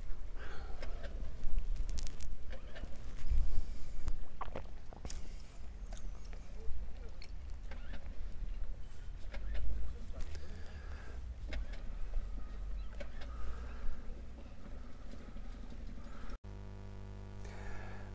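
Wind buffeting an outdoor microphone: a low rumble that rises and falls in gusts, with scattered clicks from handling. Near the end it cuts off suddenly to quieter indoor room tone with a faint steady hum.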